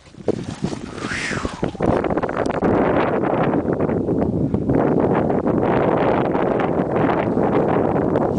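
Wind buffeting the camera microphone: a loud, steady rushing that builds up about two seconds in and holds.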